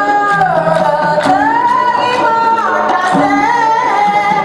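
A woman singing a solo dikir barat line into a microphone, with long held notes that bend and glide. The seated chorus claps along with the percussion beneath her.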